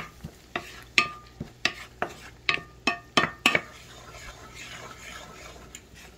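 Wooden spatula knocking and scraping against a nonstick frying pan while stirring melting butter and chopped garlic: about a dozen sharp taps in the first three and a half seconds, some with a short metallic ring. After that, a soft, steady sizzle of the butter and garlic frying.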